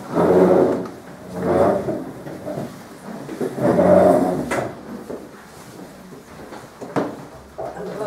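Furniture scraping or sliding, three drawn-out scrapes in the first five seconds, then a single sharp knock about seven seconds in.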